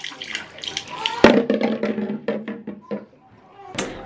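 Mouthwash glugging out of a plastic bottle into a bathroom sink, splashing on the basin in quick pulses, with a sharp knock about a second in.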